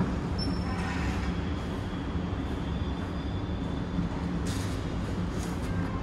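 Go-kart engine running on an indoor kart track, a steady low drone.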